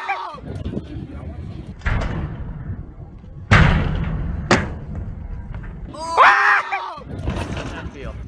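Thuds and a sharp click on a concrete skatepark ramp. The loudest is a heavy thud about three and a half seconds in. A young man's voice shouts excitedly about six seconds in.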